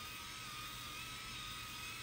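Microtouch Titanium five-blade electric head shaver running while it is glided over a bald scalp: a quiet, steady electric whir with a thin high tone.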